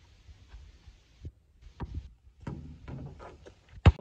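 Low thuds of a basketball being handled and hitting the ground, a few scattered knocks, then one sharp, loud thump near the end.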